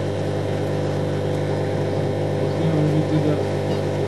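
A steady low hum runs throughout, with faint voices murmuring underneath.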